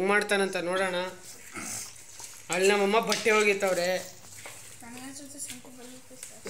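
People's voices talking in two loud stretches with a short gap between, then a quieter voice near the end.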